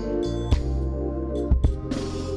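Gospel band accompaniment between sung lines: held keyboard chords over a strong bass, with sharp drum hits about half a second in and twice in quick succession near a second and a half.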